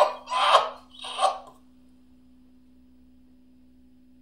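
A man's voice giving a few short, breathy exclamations in the first second and a half. After that only a faint steady hum remains.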